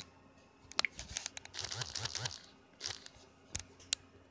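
Handling noise while a passage is looked up: a few sharp clicks and, about a second in, a short crinkly rustle lasting about a second and a half.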